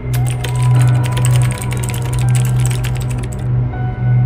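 Rapid, irregular typing clicks, used as a sound effect while a title is typed out, over a steady low drone of dark background music. The clicking stops about three and a half seconds in, leaving the drone.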